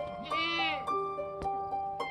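A goat kid bleats once, a short arching call, over background music of plucked string notes.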